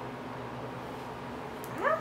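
Steady room hiss with a faint low hum, then near the end a woman's drawn-out "I" sliding up in pitch.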